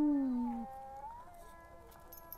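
Black wolf howling in long, drawn-out notes. The lowest note stops about half a second in; the higher ones carry on, dipping and rising slightly in pitch as they grow fainter.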